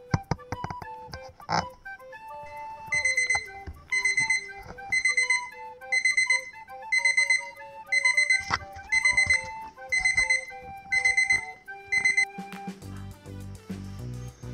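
An alarm clock going off: short bursts of rapid high beeps, about one burst a second, for roughly nine seconds, then it stops. Gentle melodic background music plays throughout.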